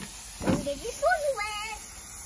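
Three short high-pitched voice sounds, over a faint steady hiss.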